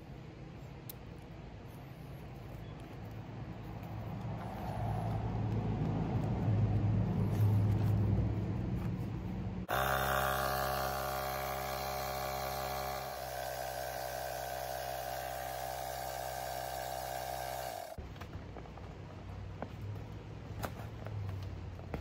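AstroAI 20V cordless tire inflator's compressor running steadily while it inflates an inflatable donut float through its valve adapter. It starts suddenly about ten seconds in, drops slightly in level a few seconds later and cuts off suddenly about eight seconds after starting. Before it comes a lower, rougher rumble.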